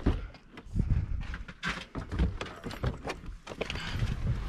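Irregular knocks, low thuds and scuffing from a handheld camera being carried and jostled as someone steps on dirt and climbs into an SUV.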